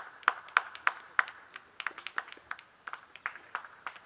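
A small group of people clapping: quick, uneven hand claps, densest in the first second or so, then thinning out and stopping near the end.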